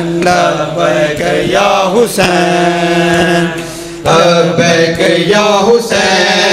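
Male voices chanting a noha over microphones, holding long sustained notes, with faint regular thuds of chest-beating (matam) beneath. The chant dips briefly about three and a half seconds in, then comes back loud.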